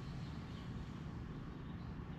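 Steady outdoor background noise: a low rumble with a faint hiss, with no distinct event.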